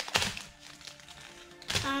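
Foil booster-pack wrapper crinkling and crackling as someone struggles to tear it open, with a few sharp crackles in the first moments, then quieter.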